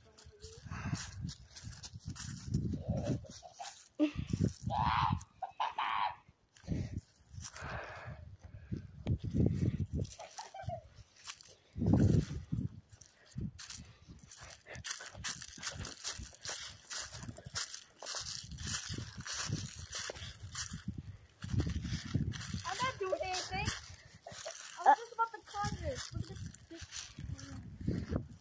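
Handheld phone recording outdoors: irregular low rumbling bumps from wind and handling on the microphone, scattered crackles of steps through dry leaves, and faint, indistinct voices.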